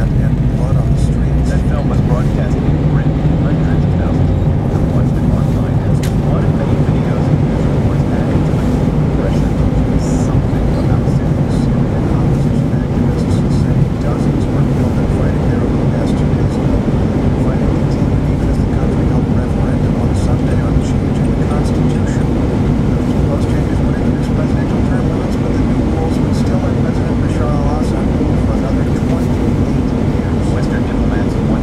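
Steady engine and tyre rumble heard inside a moving car, with a faint voice underneath.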